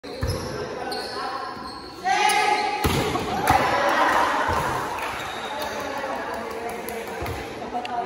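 A volleyball being struck and hitting the hard court floor, a few sharp thumps echoing in a large gym. There is a loud shout about two seconds in and a stretch of players' voices just after.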